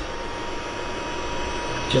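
Optrel Swiss Air powered air-purifying respirator's blower fan running, a steady rush of air with a faint constant whine.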